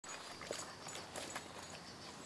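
A black Labrador moving its paws through dry leaves and twigs at the water's edge: a handful of irregular light crackles and taps.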